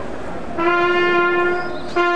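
After a short lull, a brass instrument sounds one long steady note, held for over a second and breaking off just before the end.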